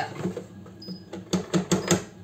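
Plastic lid of a Cecotec Mambo food processor jug being twisted to unlock and lifted off: a few light knocks, then a quick run of about four sharp plastic clicks in the second half.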